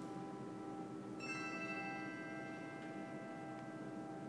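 Handbell choir playing: a chord of several handbells struck together about a second in and left to ring out and slowly fade over the still-sounding earlier notes.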